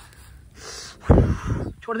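A man's sharp gasp: a faint hiss of breath, then a loud burst of breath about a second in. A man's voice starts speaking near the end.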